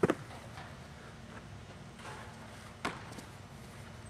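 Soccer ball thuds: a sharp, loud one at the very start and a smaller one about three seconds in, with a few faint taps between them.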